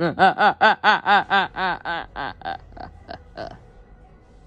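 A man's long laugh: a quick string of 'ha' pulses, about five a second, each rising and falling in pitch, loudest at first and then trailing off and dying away about three and a half seconds in.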